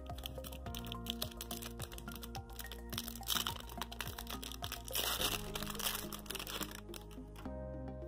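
Baseball card pack wrapper crinkling and tearing as it is opened by hand, with many small crackles and two louder rustles about three and five seconds in, over soft background music.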